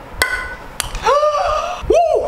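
A small thrown ball hits a frying pan with a short metallic ping, then gives a second sharp tap about half a second later as it lands, a bounce trick shot coming off. A man's excited rising cry follows.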